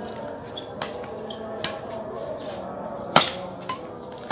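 Steady high chirring of crickets, with sharp clicks of badminton rackets striking a shuttlecock. The loudest hit comes about three seconds in, followed by a lighter one about half a second later.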